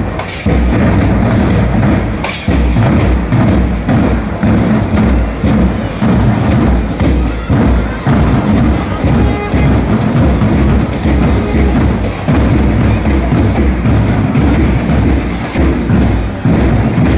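A school marching band's bass drums beating a steady march rhythm, about two beats a second, with band music over it.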